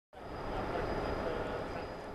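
Steady mechanical drone with noise, fading in at the very start, with a faint thin high whine over it: the ambient running sound of an offshore oil platform's machinery.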